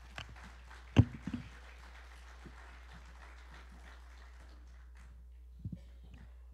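Handheld microphone handling noise as the mic is passed: one loud knock about a second in, a couple of softer knocks after it, then faint shuffling and footsteps.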